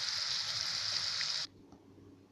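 Potatoes and onions sizzling as they fry in oil in a pan: a steady hiss that cuts off suddenly about one and a half seconds in.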